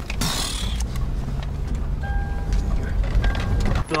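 Car driven fast over rough off-road ground, heard from inside the cabin: a steady low rumble from engine and tyres, with knocks and jolts from the bodywork and suspension and a brief rush of noise just after the start.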